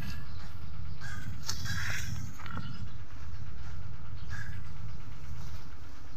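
Outdoor noise in dry undergrowth: a steady low rumble with scattered crackles and short rustles of dry grass and brush.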